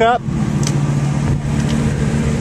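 Ford F-350's 6.8-litre Triton V10 idling steadily with a low, even drone.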